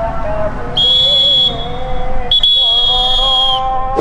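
Referee's whistle blown twice, two steady high-pitched blasts: a shorter one about a second in, then a longer one just after the two-second mark.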